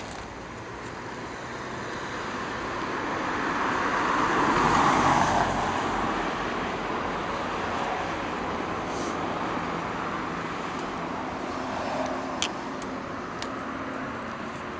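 A car passing by on the road, its tyre and engine noise swelling to a peak about five seconds in and then slowly fading. A couple of sharp clicks come near the end.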